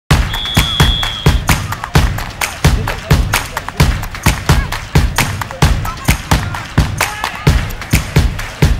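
Background music with a strong, steady drum beat of about three hits a second, and a brief held high tone near the start.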